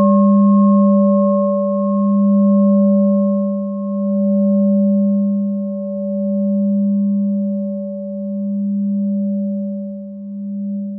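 A singing bowl ringing out after a single strike: one low steady tone with fainter higher overtones, slowly swelling and fading about every two seconds as it decays.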